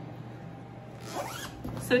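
A zipper on a fabric storage organizer, pulled once about a second in: a short rasp that rises in pitch.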